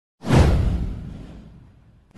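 Whoosh sound effect over a deep rumble: it swells in sharply a fraction of a second in, sweeps downward and fades away over about a second and a half.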